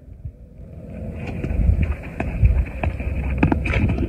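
Low rumbling wind noise buffeting a phone microphone, building after about a second and swelling in uneven pulses, with a few sharp clicks over it.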